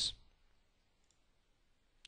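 Near-silent room tone with a faint single computer mouse click about a second in.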